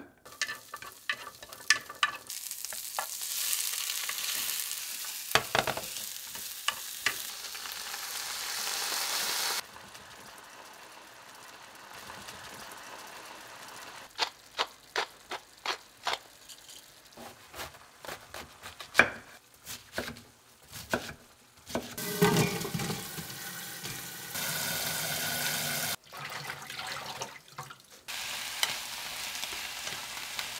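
Brussels sprouts and carrots sizzling in a hot frying pan while wooden chopsticks stir them, clicking and tapping against the pan. The sizzle comes in several stretches, the loudest in the first third, with quieter spells of scattered taps between them.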